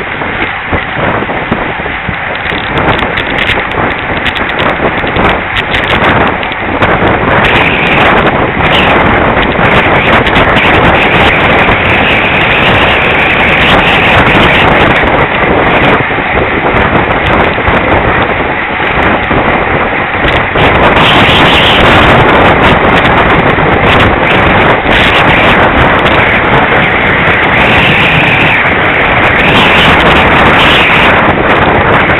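Wind rushing over the microphone of a camera mounted on a road bike moving at race speed, mixed with tyre and road rumble; loud and steady, getting louder about six seconds in.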